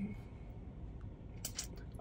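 A quiet pause inside a car cabin: faint steady background hiss, a short low voiced sound from the man right at the start, and a few small mouth clicks near the end just before he speaks.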